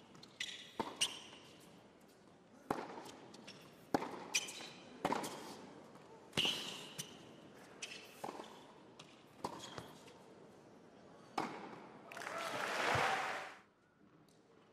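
Tennis ball struck back and forth by rackets and bouncing on the court in a rally, a sharp knock about every second. Crowd applause breaks out near the end, the loudest part, and cuts off suddenly.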